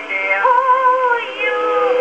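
Early acoustic-era Victor disc record of a vocal duet with orchestra, played on a 1905 Victor Type II horn phonograph with an oak horn. The sound is narrow with little treble, and a long wavering note is held from about half a second in.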